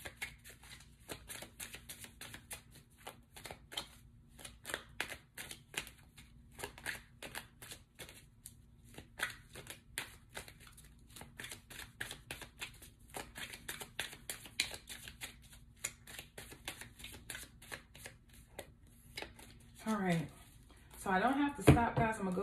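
A deck of tarot cards shuffled by hand: a quick, irregular run of soft card clicks and slaps that stops shortly before the end.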